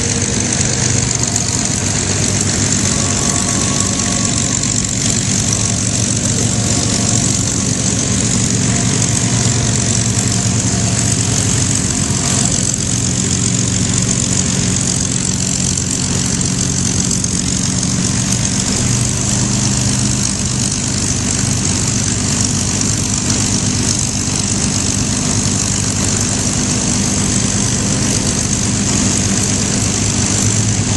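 Piston engines of P-51 Mustang fighters idling as they taxi, a steady low drone with propeller noise. The engines are Packard Merlin V-12s.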